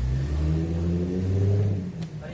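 A motor engine revving, its low pitch rising gently for about two seconds before dropping away near the end.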